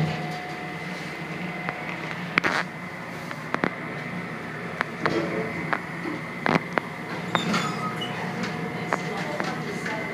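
Century elevator car running between floors: a steady hum with thin, fixed whining tones, broken by a few sharp clicks and knocks from the car. The doors stand open by the end.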